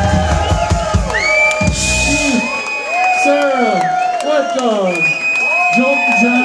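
A live rock band's closing chord, with bass and drums, rings out and stops about two seconds in, then the audience cheers and whoops, with long high-pitched calls over the shouting.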